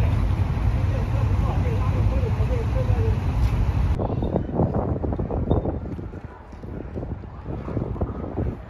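Low rumble of wind buffeting the microphone and road noise while riding a bicycle. About four seconds in it gives way to quieter outdoor ambience with scattered short sounds.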